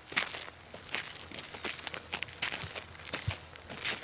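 Footsteps on an asphalt path, a person walking at a steady, unhurried pace, each step a short sharp scuff.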